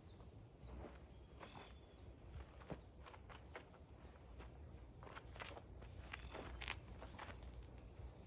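Faint footsteps and shoe scuffs on bare dirt as a person steps and shifts stance through a kung fu form, in scattered short strikes that come thicker near the end. A bird gives a few short chirps now and then.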